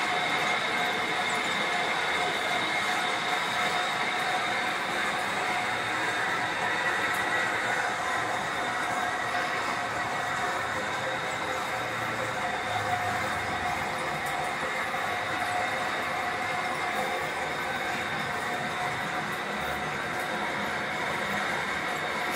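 Metal lathe turning down the welded splice on a screw conveyor shaft: a steady running and cutting noise with a few constant high-pitched tones.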